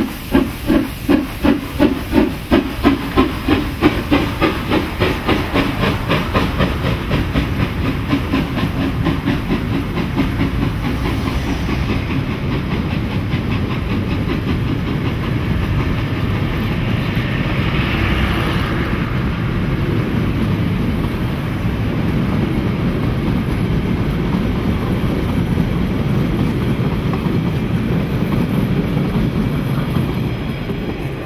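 Molli 900 mm narrow-gauge steam locomotive 99 2324-4 pulling away with a train. Its exhaust beats come about two to three a second and quicken over the first several seconds, then blend into the steady rumble and clatter of its carriages rolling past on the rails.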